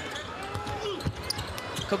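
Basketball being dribbled on a hardwood court, a few short bounces, over the steady murmur of an arena crowd.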